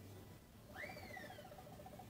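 A faint whistled call: one note that rises quickly and then slides down in pitch, with a quick run of soft pulses beneath it.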